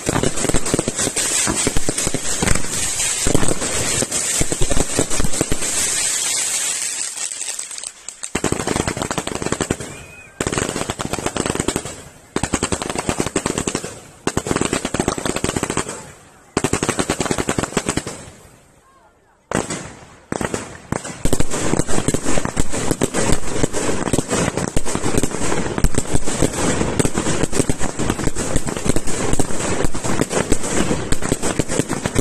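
Fireworks display: a rapid, dense barrage of reports. Through the middle it breaks into separate volleys about every two seconds, each fading away, then from about two-thirds in it runs as one unbroken barrage.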